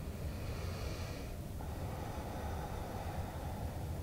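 A person's breath through the nose, close to the microphone, during the first second and a half, then only a low steady hum.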